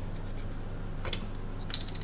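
A metal tablespoon giving a light click and then a few small taps with a brief ringing note against kitchen dishes, over a steady low hum.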